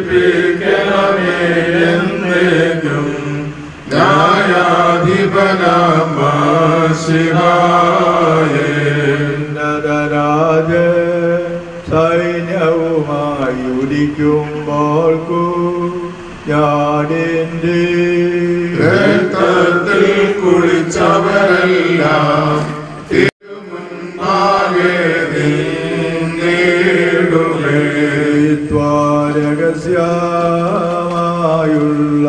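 Slow liturgical chanting of a Christian funeral service: a melodic sung line that rises and falls over a steady low held note. The sound cuts out for an instant about two-thirds of the way through.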